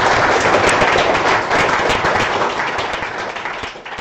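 Audience applauding: many hands clapping at once, tapering off near the end.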